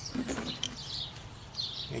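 Birds chirping faintly in the background, a few short high calls, with a soft handling tick about two-thirds of a second in.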